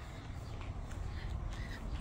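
A few faint, short bird calls over a steady low rumble.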